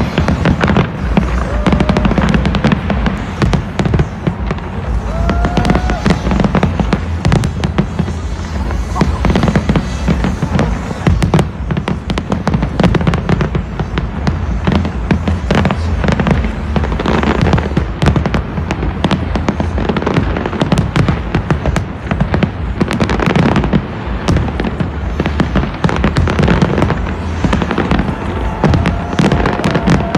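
Large fireworks display: aerial shells bursting in a rapid, unbroken run of bangs and crackles.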